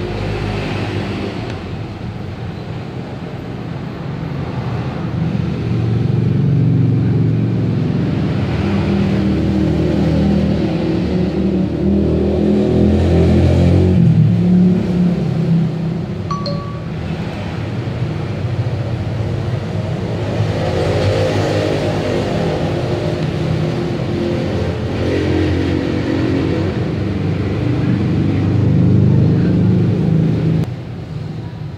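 Motor vehicle engines running nearby, the sound swelling and fading as if vehicles pass by. A brief high beep sounds about sixteen seconds in.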